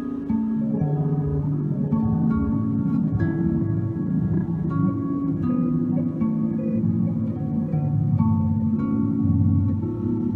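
Guitar played through the Empress ZOIA's Quark Stream micro-looper patch with the loop size pushed up fast. Short chopped fragments repeat as a shifting run of held notes changing about every half second, sort of sub-audio oscillations, all passing through the patch's plate reverb.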